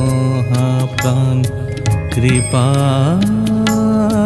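Bengali devotional bhajan music, an instrumental passage: a melodic line that bends and wavers, holding a long note in the second half, over steady rhythmic percussion.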